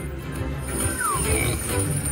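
Slot machine playing its free-spins bonus music as the reels spin, with a short falling electronic tone about a second in.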